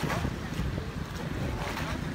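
Wind blowing across the phone's microphone, a steady low rumble and buffeting, over the open sea.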